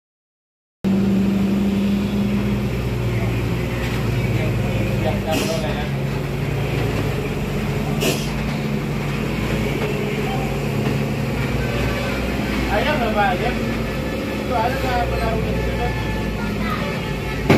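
Three-axle cargo truck's diesel engine running steadily under load as it crawls up a steep hairpin, with a low, even engine note. It starts suddenly after a second of silence, and a couple of short clicks or hisses sound about five and eight seconds in.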